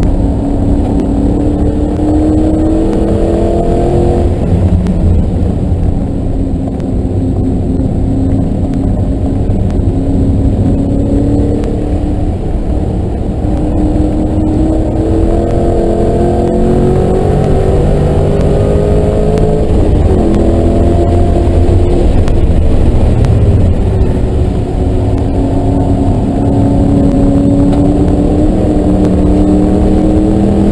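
2009 Mustang GT's 4.6-litre V8, heard from inside the cabin while it is driven hard on a race track, with road and tyre noise. The engine pitch climbs under acceleration, drops about four and about twenty seconds in, and climbs again near the end.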